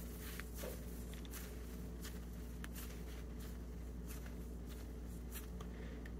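Faint soft crackles and rustles of a slice of egg white bread being crushed into a ball in the hands, over a steady low hum.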